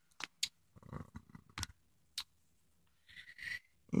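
Faint, scattered light clicks and ticks, about half a dozen, from small metal lock-picking tools being handled. A soft rustle comes near the end.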